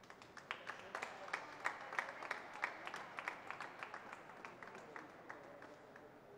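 Scattered applause from a small audience: a few hands clapping irregularly, strongest in the first few seconds, then thinning out and dying away before the end.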